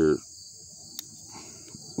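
Steady, even high-pitched chorus of crickets, with a single sharp click about a second in as the folding tools of a Swiss Army style multi-tool are handled.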